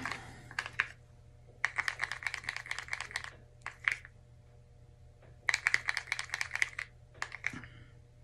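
Paint being stirred in a plastic cup, the stir stick clicking rapidly against the cup's sides in two bursts of about a second and a half, each followed by a shorter burst; the paint is lumpy.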